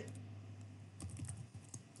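Computer keyboard typing: a few faint, quick keystrokes about a second in as a word is typed.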